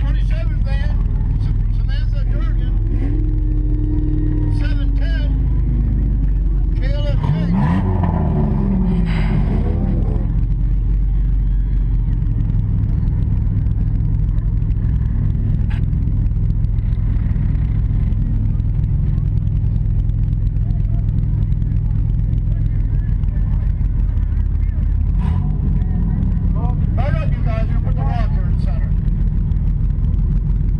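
Demolition derby minivan's engine running steadily, heard from inside the stripped cab, with voices shouting over it at times.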